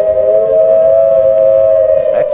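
Civil-defense air-raid warning signal: a siren holding one steady pitch, loud, sounding the alert to take shelter.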